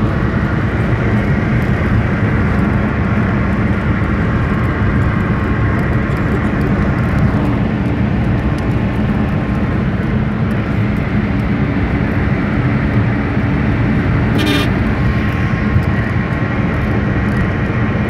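Steady road and engine rumble inside a moving car's cabin, with one short click late on.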